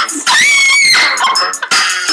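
A girl's high-pitched scream, held for about half a second, over hip-hop music playing in the room.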